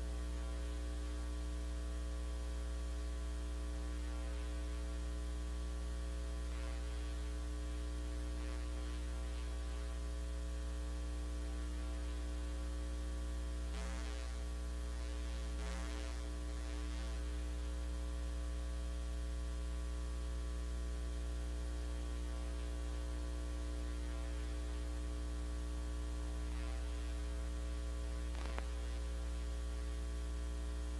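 Steady electrical mains hum with a long stack of overtones, as from an idle sound system. A couple of faint brief noises come about halfway through, and a click near the end.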